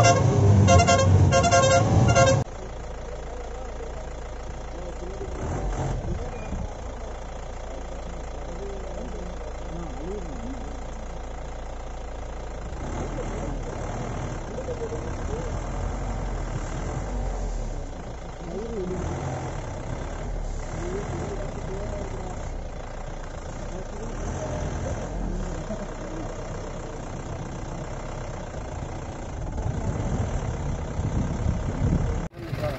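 Music cuts off suddenly about two seconds in. Then a vehicle's engine runs steadily at idle, with people's voices faintly over it, one exclaiming "Oh, my".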